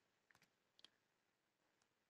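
Near silence, with two or three faint clicks in the first second.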